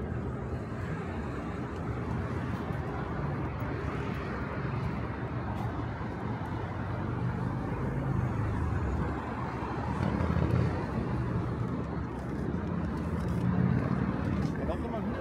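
Road traffic on a busy multi-lane city street: a steady rush of car and bus engines and tyres, swelling as vehicles pass below, loudest around the middle and again near the end.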